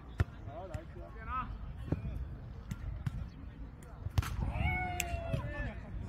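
Sharp thuds of a jokgu (foot volleyball) ball being kicked and bouncing, several separate hits during a rally, with players' short shouted calls; a longer held shout comes just after a hard hit near the end.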